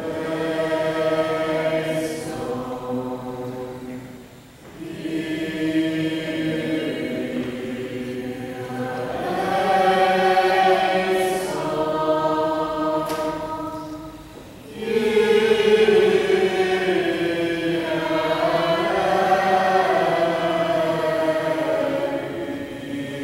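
Small mixed choir of men and women singing a liturgical chant in long, held phrases, with brief breaths between phrases about four and a half and fourteen and a half seconds in.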